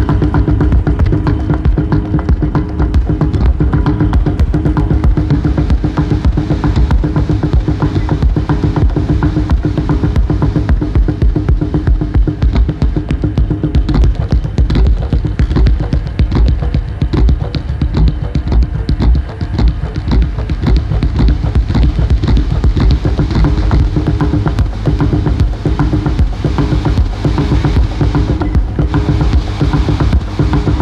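Live homemade techno: a steady, dense beat with heavy bass, built from piezo-amplified metal springs and tines plucked and scraped by hand. It is full of rapid clicks over a few held tones, and the sound grows brighter about halfway through.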